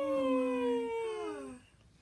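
A long drawn-out wordless vocal note from two voices at once: a higher voice sliding slowly down in pitch while a lower one holds steady beneath it. Both stop about a second and a half in.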